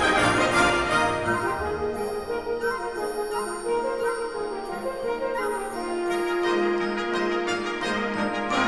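Orchestral Christmas film-score music with brass: full orchestra at the start, thinning about a second in to a softer brass passage, with a long held note near the end.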